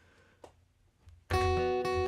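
After about a second of quiet, a single chord strummed on an acoustic guitar, left ringing.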